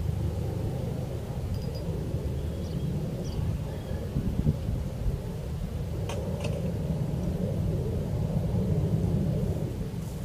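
A steady low outdoor rumble whose loudness wavers throughout, with a faint click about six seconds in.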